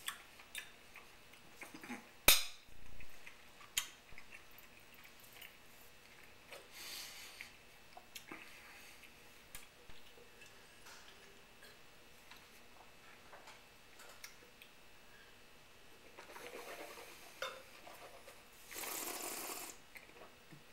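Fork and cutlery clinking against a plate while eating, with one sharp clink a couple of seconds in and a few softer clicks and taps after it. Short hissy noises come later, twice near the end.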